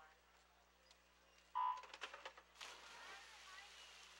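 Electronic starting signal for a swimming race, one short loud beep about a second and a half in. Swimmers diving off the blocks follow, then a steady wash of splashing water with crowd voices.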